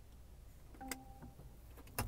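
Lexus RX 450h infotainment display giving one short confirmation beep as an on-screen button is selected with the cursor. Two sharp knocks come near the end.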